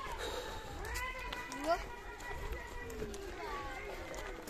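Faint voices of children talking and calling in the background, with a faint steady high tone underneath.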